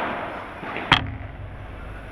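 A single sharp crack of a padel ball impact close by, about a second in, followed by a short low ring in the hall.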